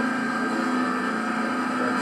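Small engine of a cactus chopper running steadily as a fixed-pitch drone, played back over loudspeakers into a lecture room.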